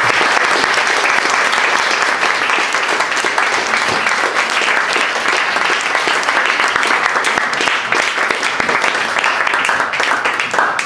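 An audience applauding, with steady, sustained clapping.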